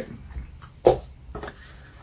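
Tarot cards being handled: soft rubs and taps of the cards as the deck is squared and slid toward its cardboard box, with one sharper tap a little under a second in.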